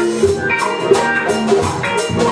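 A live band playing an instrumental passage: guitar and keyboard over a drum kit keeping a steady beat.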